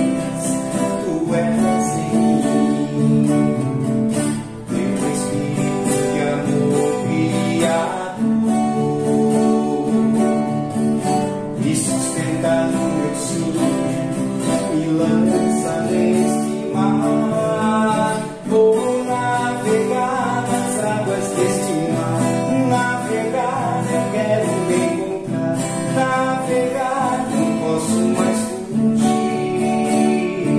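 Two acoustic guitars, one a nylon-string classical guitar, strummed together in a steady rhythm, with a man singing a Portuguese worship song over them.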